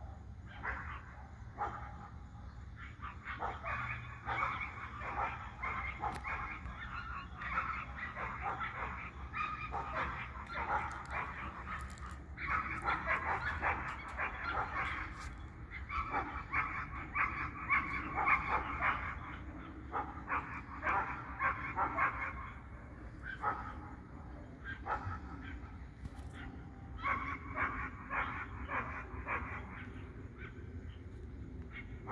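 Dogs barking repeatedly in bouts of a few seconds with short pauses, over a steady low hum.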